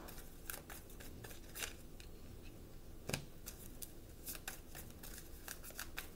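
Tarot cards being shuffled and handled in the hands: a string of irregular, faint card snaps and clicks, the loudest about three seconds in.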